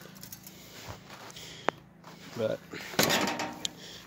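Faint handling noises around a riding mower: a single sharp click about halfway through, then a short rattle near the end.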